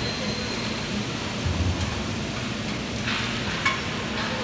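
Steady factory-floor background of machinery hum and hiss, with a dull knock about one and a half seconds in and a short sharp click near the end.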